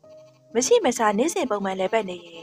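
A narrator's voice speaking Burmese, starting about half a second in, over faint background music.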